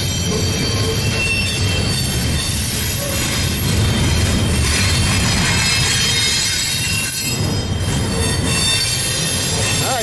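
Double-stack intermodal freight train rolling past on a curve. A steady low rolling noise of wheels on rail runs under several high, thin squealing tones from the wheel flanges grinding through the curve.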